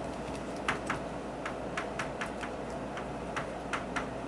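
Chalk tapping and scratching on a blackboard during writing: a run of short, irregular light clicks, a few a second.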